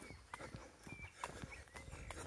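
Faint footsteps of a person walking on a tarmac path, with a few brief high chirps over them.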